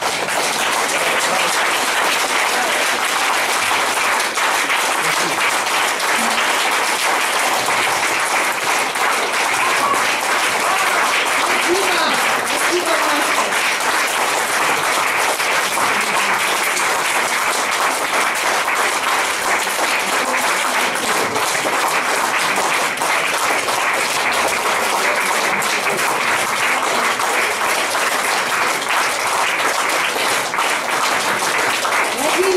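Audience applauding steadily and without a break, with a few voices heard through the clapping.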